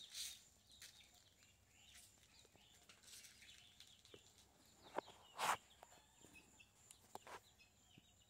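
Near silence: faint outdoor ambience with a few soft, brief sounds, the loudest about five and a half seconds in.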